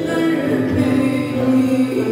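Live Turkish folk music: a woman sings long, held notes over an ensemble of bağlama and other folk instruments.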